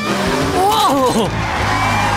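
Cartoon sound effects of a race car skidding with tyres squealing as a wheel lock clamps onto its wheel and stops it, over background music.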